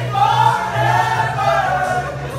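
A mixed group of young men and women singing together like a choir, holding long notes that swell and fade.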